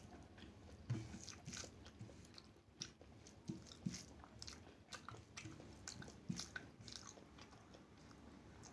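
Close-up eating sounds of rice and goat head curry eaten by hand: irregular wet mouth smacks and chewing clicks, a few sharper ones standing out.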